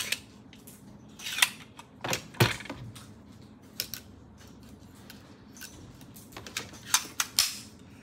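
Scattered metallic clicks and knocks of a pneumatic framer's point driver being handled as flexi-point nails are loaded back into its magazine and the tool is set against the table, with a cluster of clicks near the end.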